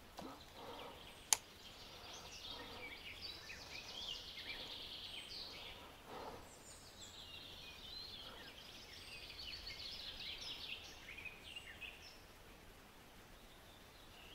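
Faint songbirds singing, with warbling trills through much of the stretch, and a single sharp click a little over a second in.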